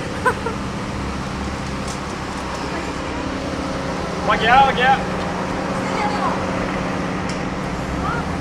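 Steady hum of road traffic and running car engines, with brief talking about four to five seconds in.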